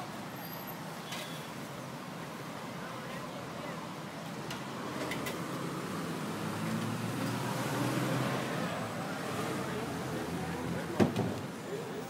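Road traffic on a city street, a steady hum with indistinct voices over it; the noise swells as a vehicle passes in the middle, and a brief sharp knock comes near the end.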